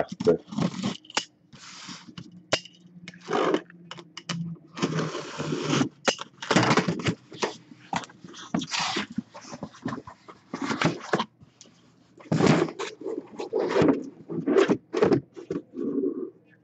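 Cardboard shipping case being cut open with a box cutter: the blade slitting the packing tape, then the cardboard flaps pulled and the case dragged, in an irregular run of short scrapes and rustles.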